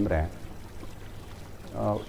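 A man's voice trails off, and after a pause of faint steady hiss a man starts speaking again near the end.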